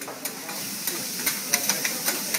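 Meat and vegetables sizzling on a steel teppanyaki griddle: a steady hiss with a quick series of sharp clicks from a metal spatula striking and scraping the griddle.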